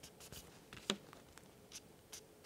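Faint handling noise of a pack of card flashcards: a few short rubs and slides of card on card as one card is moved behind the others, with a sharper tick about a second in.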